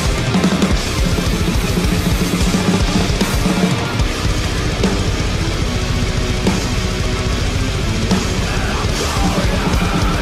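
Drum playthrough of a heavy progressive metal song: a full drum kit played hard and busily over distorted guitars, dense and continuous.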